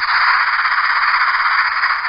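A loud, steady hiss, the sound effect that an animal-sounds app plays for an eel. It starts abruptly.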